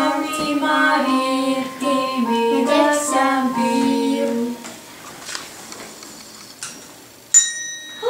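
A young girl singing a short song alone, with no accompaniment, ending about four and a half seconds in. Near the end a single bright bell-like ding rings out suddenly and keeps ringing.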